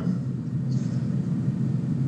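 A steady low hum or rumble with no speech over it.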